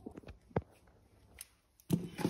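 A few faint, short taps and clicks from handling a RATS tourniquet's elastic cord and its clip, the clearest just over half a second in.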